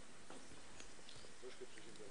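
Faint murmur of low, indistinct voices in a large hall, with scattered small clicks and rustles.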